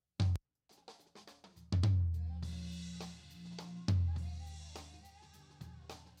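Playback of a drum kit recorded live: two deep, low drum hits about two seconds apart, each ringing out long, with cymbal wash and bleed from the rest of the kit behind them. A short clipped hit comes just after the start.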